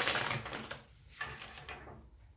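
Tarot deck being riffle-shuffled and bridged: a rapid fluttering rush of cards through the first second, then softer rustling as the deck is squared up.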